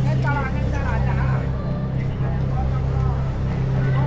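Busy city street ambience: a steady low drone of traffic under snatches of passers-by talking.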